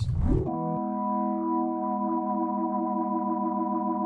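Drawbar organ tone from a Nord Electro 5D played through a Leslie rotary-speaker pedal, likely on its 122A cabinet model: a quick upward run, then a chord held steadily with the slight waver of the rotary simulation.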